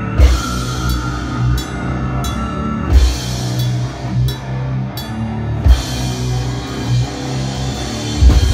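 A brutal death metal band playing live: distorted guitars and bass over a drum kit, with cymbal strokes on a steady, fairly slow beat and heavy accented hits about a second in, at three seconds and near six seconds.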